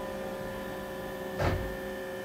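Steady hum of a CNC machining cell, several even tones over a low drone, with one short thump about one and a half seconds in.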